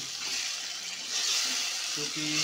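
Hot oil tadka of fried garlic, onion and tomato sizzling as puréed saag is stirred into it with a ladle. The sizzle gets louder about a second in.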